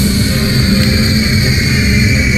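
Dramatic anime soundtrack music under a loud, steady rush of noise, with held high tones over a deep rumble.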